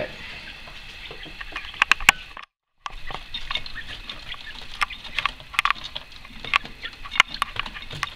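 Coturnix quail chicks moving and pecking about in pine-shaving bedding: light, irregular ticks and clicks, broken by a brief cut to silence about two and a half seconds in.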